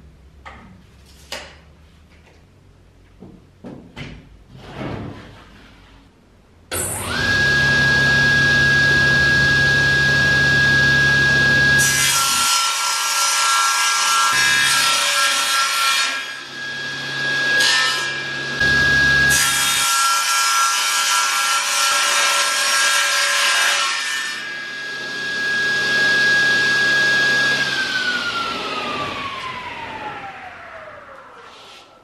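A few knocks and clicks of handling, then a table saw starts about seven seconds in and runs with a steady whine. From about twelve seconds its blade cuts through a large sheet of board, with two short breaks. Near the end the saw is switched off and the whine falls in pitch as the blade spins down.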